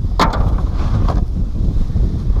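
Wind buffeting the microphone as a steady low rumble. About a quarter of a second in and again about a second in, there are short knocks as a plastic crate of lettuce is slid onto a cart.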